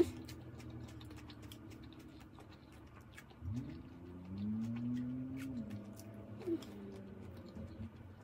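A woman chewing food, with small scattered mouth clicks, and a closed-mouth "mmm" of enjoyment that rises in pitch about three and a half seconds in and holds for about two seconds.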